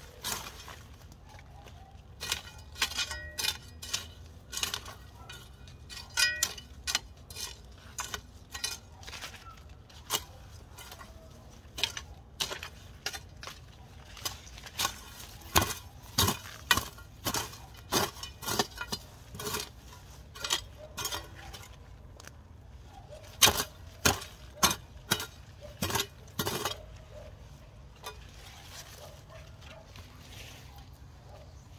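Metal garden hoe striking and scraping dry soil in a run of irregular chops, about one or two a second, some with a short metallic clink as the blade hits grit or stones. The strokes stop a couple of seconds before the end.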